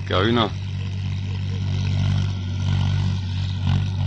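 Steady low hum of an idling engine, even in pitch throughout, with a man's voice briefly at the very start.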